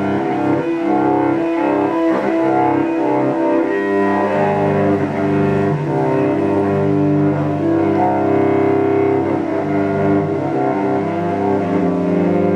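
Solo cello, bowed, playing long held low notes with several sounding at once, the pitches shifting every second or two.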